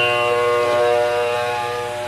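Tanpura drone: a steady, held chord of several notes with no singing over it.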